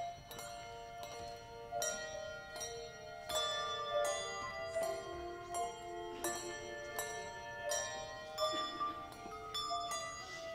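Handbell choir playing a piece on brass handbells: notes and chords struck in turn, roughly one or two a second, each ringing on under the next.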